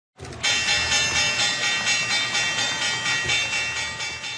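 Channel intro sound: a sustained, bright, many-toned chord that pulses about four times a second and fades away near the end.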